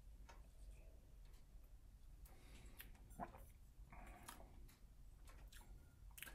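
Near silence: room tone with a few faint clicks and small mouth sounds as whiskey is sipped from a tulip-shaped tasting glass, the clearest click about three seconds in.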